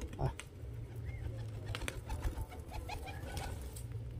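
Domestic pigeons cooing faintly while pecking at food on a concrete rooftop, with scattered light taps from their beaks.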